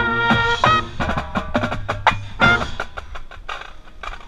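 Marching band brass, trumpet closest, holding a loud chord that cuts off just under a second in, followed by a run of sharp clicking percussion hits from the band's percussion section.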